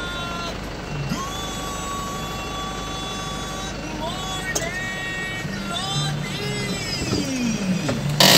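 A voice singing a slow melody with long held notes and sliding pitches, over the steady low hum of the van's engine in the cab.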